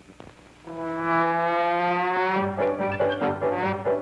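Brass fanfare of opening title music on an old film print's soundtrack. A few crackles, then about a second in a long held brass chord, which breaks into a run of short, punchy brass notes about two and a half seconds in.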